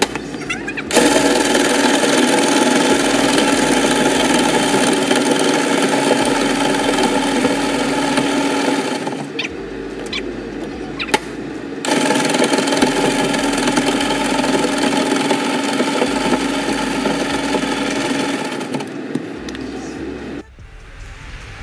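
Electric ice shaver running and shaving ice into a bowl: a steady motor hum under dense shaving noise, in two runs, the first from about a second in to about eight seconds, the second from about twelve seconds to just before the end.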